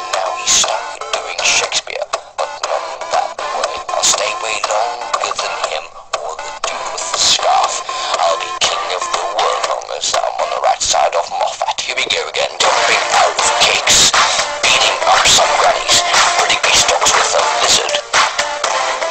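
Electronic pop music with processed, synthetic-sounding singing, sounding thin with little bass. It gets fuller and louder about two-thirds of the way through.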